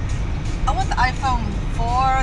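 Steady low road and engine rumble inside a car's cabin cruising at highway speed, under talking.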